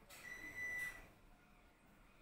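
Sewing thread pulled through fabric by hand: a brief rasping zip with a steady high squeak, building and then stopping within about a second.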